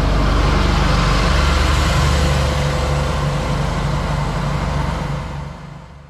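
Deutz-Fahr 8280 TTV tractor's six-cylinder diesel engine running as the tractor drives over and away, a loud, pulsing low rumble that fades near the end.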